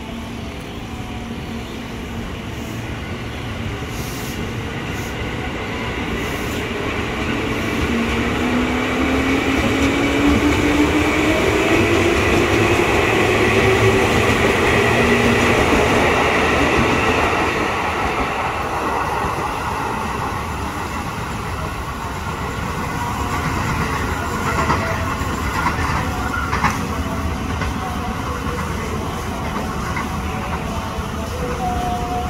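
Electric commuter train, a Tokyo Metro 6000-series EMU, accelerating along the platform. The traction-motor whine rises steadily in pitch over the rumble of wheels on rail, loudest in the middle, then eases as the train draws away.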